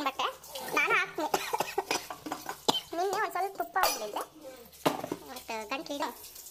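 Kitchen utensils and steel containers clinking and knocking a few times, with bursts of voices talking in between.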